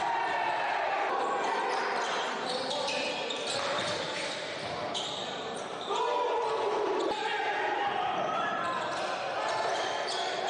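Live sound of a basketball game in a gym: the ball bouncing on the hardwood, with indistinct shouts from players and spectators echoing in the hall.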